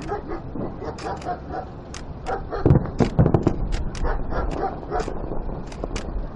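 Fireworks going off: a rapid series of sharp pops and cracks, with a cluster of louder, deeper booms about three seconds in.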